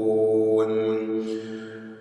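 A man's voice reciting the Quran in melodic tajweed style, holding one long drawn-out note on the last syllable of a verse. The note stays on one pitch and fades away near the end.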